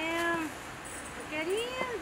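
A person's voice giving two drawn-out, wordless calls that rise and fall in pitch, like a cooing or mewing 'oooh': a short one at the start and a longer one about a second and a half in.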